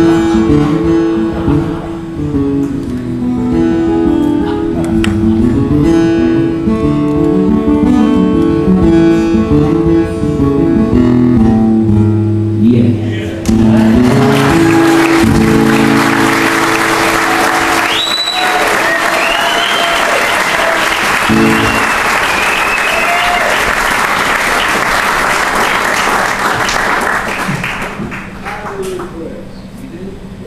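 Acoustic guitars play the closing bars of a song and stop about halfway through. Audience applause then takes over and fades out near the end.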